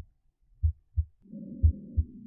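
Auscultation simulator playback of normal heart sounds: paired lub-dub thumps about once a second. A soft normal breath sound comes in about halfway through.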